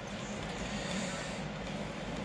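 Steady low background hiss with a faint hum underneath, no distinct knocks or clicks.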